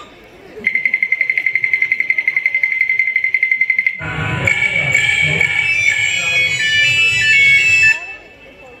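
A recorded electronic buzzing tone pulsing rapidly, about a dozen pulses a second, played over stage loudspeakers as a mime act's sound effect. About four seconds in it cuts to music with a low bass and high melody lines.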